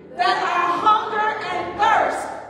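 A small group of women's voices singing together into microphones, with little or no instrumental backing: one short sung phrase, then the next one beginning near the end.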